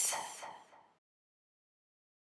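A whispered voice trailing off in the first second, then complete silence.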